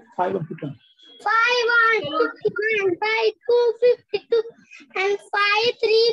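A child's voice chanting in a sing-song: a run of short syllables on a high, nearly level pitch.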